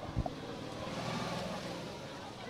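Low rumble of wind buffeting a handheld phone's microphone over the murmur of a large outdoor crowd. A short low thump comes just after the start.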